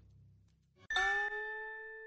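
A single bell-like chime struck about a second in, then ringing and slowly fading, marking the break between two audiobook episodes.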